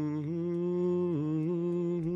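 A person humming a slow hymn tune in a low voice, holding long notes with a slight waver and gliding down between them.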